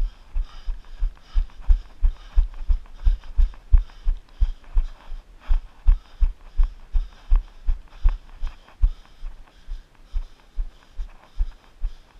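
A runner's footfalls thudding steadily, about three strides a second, carried through a body-worn action camera as deep, muffled thumps.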